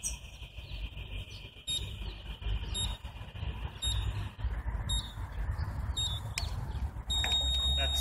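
Start countdown timer on a phone beeping: short beeps about a second apart, then a long beep of about a second near the end that signals the go for a track cyclist's standing start.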